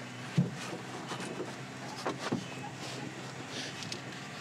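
Quiet handling sounds in a race car cockpit: light rustling and a few soft knocks as the driver's half-inch velcro leg straps are undone and his legs are shifted.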